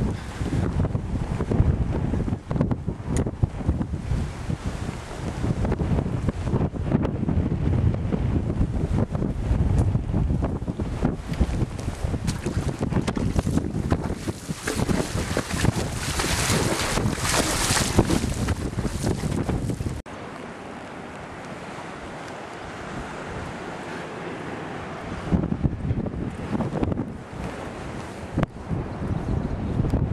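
Wind buffeting the microphone over the wash of surf, with a brighter rush of hiss about halfway through. About two-thirds of the way in the sound drops suddenly to a quieter, steadier hiss.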